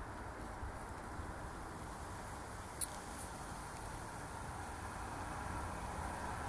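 Steady outdoor background noise, growing a little louder toward the end, with one small sharp click about three seconds in.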